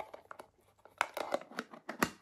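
Plastic lunch pots handled and pulled apart, giving a few irregular light clicks and taps of plastic on plastic.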